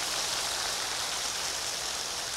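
Large audience applauding steadily, a dense even clapping.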